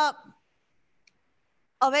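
A woman's voice trails off mid-sentence into near silence, with a single faint click about a second in, then resumes near the end.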